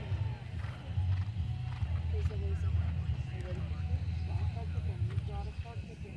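A horse cantering across grass turf, its hoofbeats faint and dull under a steady low rumble, with distant voices talking.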